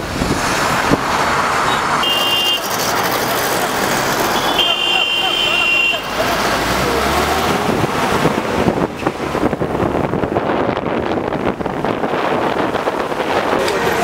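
Busy street traffic heard from a moving vehicle: engines and tyres, with two short high-pitched horn toots, one about two seconds in and a longer one about five seconds in.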